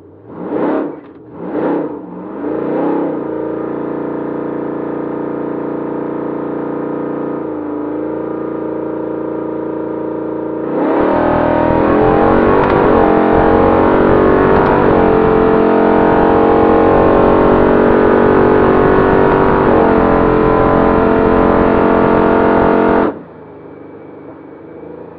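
Supercharged, cammed 5.7 Hemi V8 of a 2011 Ram 1500 heard from inside the cab: three quick revs, then held steady on the start line for several seconds. About eleven seconds in comes a full-throttle launch and a hard, loud pull lasting about twelve seconds, a drag-strip pass, which cuts off suddenly as the throttle is lifted.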